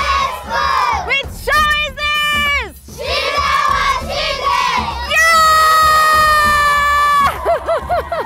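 A crowd of schoolchildren shouting together: a few short shouts with sliding pitch, a stretch of mixed voices, then one long, held shout in unison from about five seconds in that breaks off shortly after seven seconds, followed by scattered yells.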